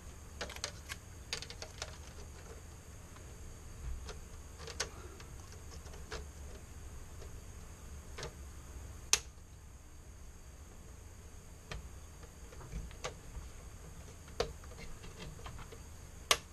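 Plastic monitor bezel being fitted over an LCD panel: scattered light clicks and taps as it is pressed into place along its edges, the sharpest about nine seconds in.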